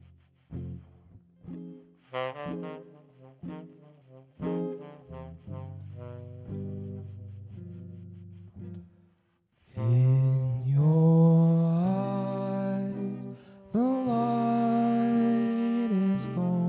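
Jazz ballad: a guitar picks slow, separate notes and chords, then after a short pause about ten seconds in a tenor saxophone comes in with long held notes, sliding up into them.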